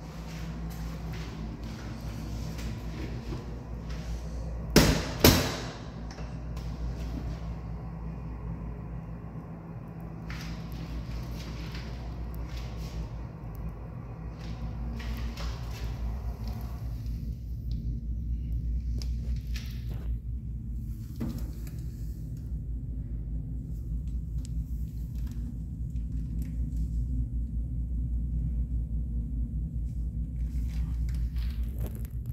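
Steady low rumble of restroom room noise with camera-handling rustle, broken about five seconds in by two sharp knocks in quick succession.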